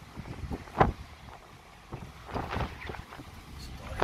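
Strong wind gusting across the microphone in uneven buffets, with a low rumble underneath.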